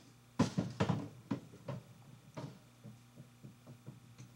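A bass drum being rolled and bumped across the wooden set floor: irregular knocks and thumps, heaviest in the first two seconds, then lighter scattered ticks.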